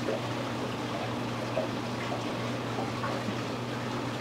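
Steady running-water noise from an aquarium system, with a low hum underneath.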